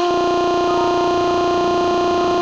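A steady synthesized tone at a single pitch with overtones, held without any change: the stuck-audio buzz of a frozen program, used in the YouTube Poop as a crash gag with a "has stopped working" error.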